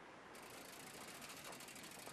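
Near silence with a faint, fast, high-pitched insect trill that starts about a third of a second in.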